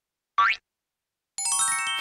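Cartoon sound effects: a short upward-sliding boing about half a second in. Near the end comes a quick run of ringing notes that hold on together as a reveal.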